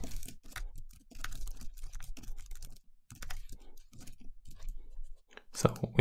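Typing on a computer keyboard: rapid key clicks in three runs separated by brief pauses, as a line of code is typed out.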